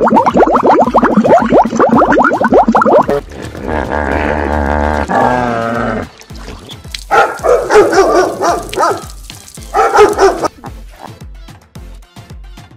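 Background music with a steady low beat under a run of animal sounds: a fast train of clicks for the first three seconds, then a wavering tone, then a burst of harsh calls from about seven to ten seconds in.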